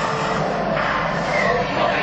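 Action-movie soundtrack from a film-clip montage, played through a ride theater's speakers: a dense, steady mix of sound effects and music.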